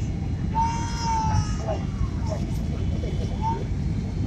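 Steady low rumble of a Boeing 767's cabin noise, from engines and airflow, on final approach. A high-pitched voice sounds for about a second starting half a second in, and briefly again near the end.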